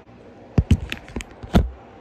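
Handling noise close to the microphone: a quick run of clicks and knocks, with two heavier thumps, one about half a second in and one about a second and a half in.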